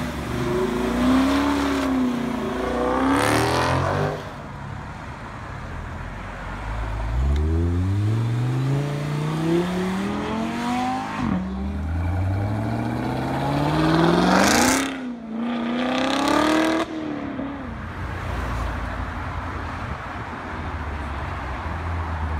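V8 muscle and sports cars accelerating hard away one after another, a Dodge Challenger first and then a Chevrolet Corvette. Each engine note climbs in pitch through the gears with a brief dip at the upshift, and the loudest run goes by about fifteen seconds in.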